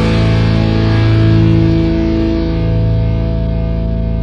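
Soundtrack rock music ending on a distorted electric guitar chord held and left ringing, slowly fading.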